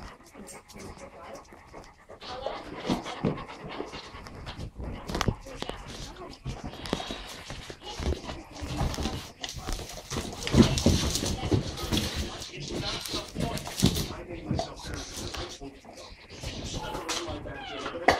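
Large dogs panting close to the microphone, with scattered knocks and shuffling as they move about.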